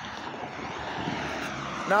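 A steady rushing background noise that slowly grows louder, with a man's voice starting again right at the end.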